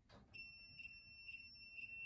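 A two-pole voltage tester's continuity beeper sounds a steady, high-pitched single tone that starts a moment in. It signals continuity between the plug-top earth and the boiler's earth, so the earth path is intact.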